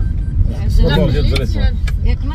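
Talking over the steady low rumble of a van's engine and road noise, heard from inside the cabin while driving.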